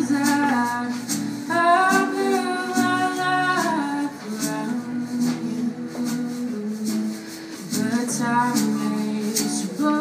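Live band playing a slow folk-rock song: acoustic guitar, electric guitar and drum kit with light steady percussion ticks, under long held sung notes.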